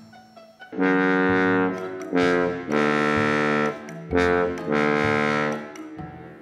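S.E. Shires bass trombone playing a slow phrase of about six held notes, starting about a second in, each note sounding full and bright with short breaks between them.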